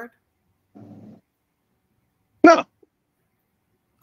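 Video-call audio, mostly dead silence from the call's noise gate, with a brief faint low hum about a second in and then a single short spoken word past the middle.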